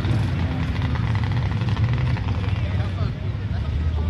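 Engines of two drag-racing cars, a twin-turbo LS-swapped Mazda RX-8 and a Dodge Hellcat, heard from far down the strip as a low, wavering drone after their run.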